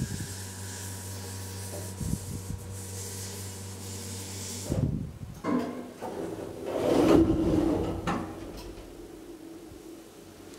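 KONE hydraulic elevator's pump motor humming steadily as the car comes in to the floor, cutting off about halfway through. About two seconds later the car's sliding doors open with a rumbling, rubbing rush.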